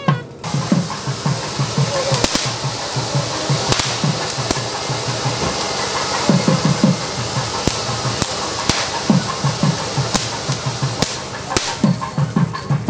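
Ground fountain firework hissing steadily as it sprays sparks, with scattered crackles, starting about half a second in. Drum beats carry on underneath.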